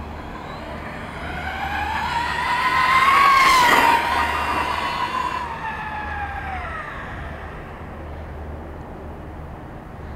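Traxxas X-Maxx RC monster truck's brushless electric motor and drivetrain whining as it drives past at speed: the whine rises in pitch and loudness, peaks about three and a half seconds in with a rush of tyre noise, then drops in pitch and fades away.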